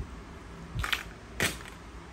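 Two light knocks, about half a second apart, as a carbon fishing rod is handled and set down among other rods.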